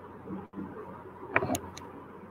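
Three quick sharp clicks over low, steady room noise and hum, a little past the middle.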